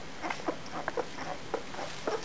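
Litter of nine-day-old German shepherd puppies nursing, making short, irregular squeaks and suckling noises, several a second.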